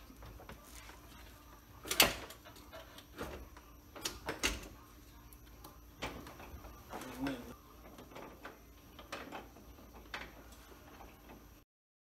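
Scattered metal clanks and knocks from a screw-type jack being set and adjusted under a car's front subframe, the loudest one about two seconds in. The sound cuts off suddenly just before the end.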